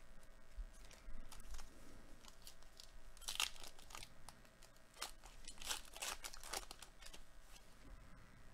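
The wrapper of a Topps Gypsy Queen baseball card pack being torn open and crinkled by hand. It comes in irregular crinkly spells, loudest about three and a half seconds in and again from about five to six and a half seconds.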